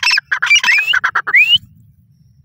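Grey francolin calling: a fast string of loud, shrill repeated notes ending in two rising whistled notes, which stops about a second and a half in.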